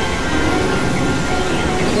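Dense, noisy electronic synthesizer drone with a steady rumbling texture and a faint held high tone.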